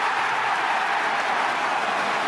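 Stadium crowd cheering as a goal goes in: a loud, steady roar of many voices with no single voice standing out.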